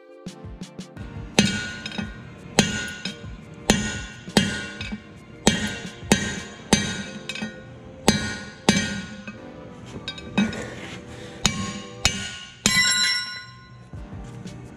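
Hammer blows on a long steel drift set through a truck wheel hub, driving out a wheel bearing race: about a dozen sharp metal strikes, each ringing briefly, unevenly spaced less than a second apart.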